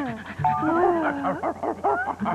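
A dog whimpering and yipping in short, bending calls, mixed with a voice and light background music with held notes.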